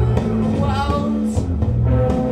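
Live rock band playing, with held low notes that change every half second or so under higher wavering lines.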